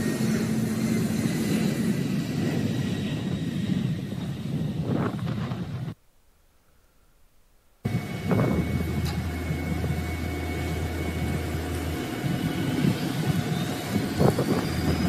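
Oshkosh Striker ARFF fire truck running, a steady engine rumble heard from outside while its boom and turret are operated. The sound drops out for about two seconds midway, then the same steady rumble returns with a low hum.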